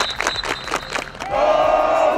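A football team clapping in unison, about four sharp claps a second, then breaking into a loud group yell together, held about half a second and longer, as a warm-up chant.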